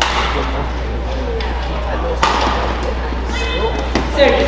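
Badminton racket hits on a shuttlecock during a rally: a few sharp cracks about a second apart, the loudest a little past two seconds in, over a hall's background murmur. A high squeak of court shoes comes near the end.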